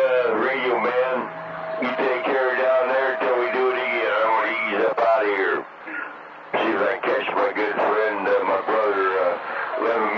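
CB radio receiver audio: garbled, unintelligible voices over the channel, with a steady whistling tone under them for the first half. Around the middle the signal briefly drops away, then the voices return.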